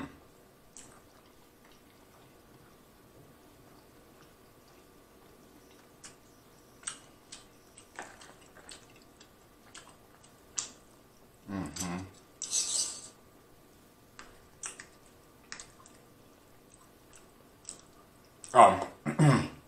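Close-miked eating sounds: sparse wet mouth clicks and smacks of chewing soft food, with light fork clicks on a plastic tray, after a nearly silent first few seconds. A short hum from the eater comes just before the middle, followed by a brief hiss.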